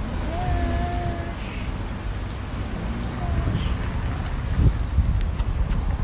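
Wind buffeting the microphone: a steady low rumble throughout, with a brief steady tone near the start and a few faint clicks near the end.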